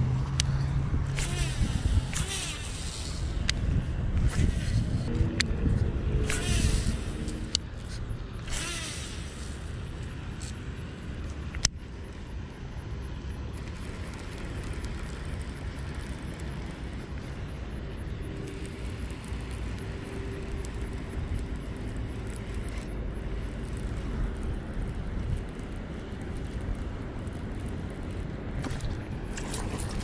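Handling noise of a baitcasting rod and reel: a run of clicks and rustles over the first several seconds and one sharp click about twelve seconds in, over a steady low rumble.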